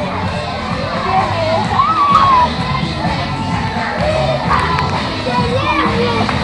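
A crowd of children shouting and cheering, several high voices calling out over one another.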